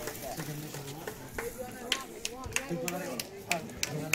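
Quiet voices of several people talking among themselves, with a few sharp clicks.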